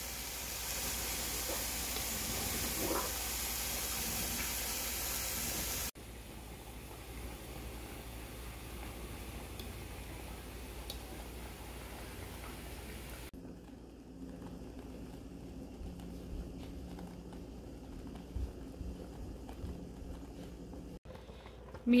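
Pan of sweetened milk curds with cinnamon simmering over a gas burner: a steady hiss with bubbling. Three short clips are cut together, changing abruptly about 6 and 13 seconds in, the first the loudest.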